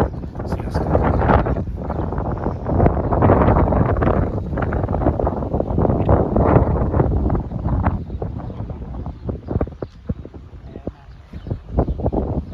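Wind buffeting the microphone in gusts, heavy for the first eight seconds or so and then easing. A scatter of short sharp clicks or taps follows in the quieter last part.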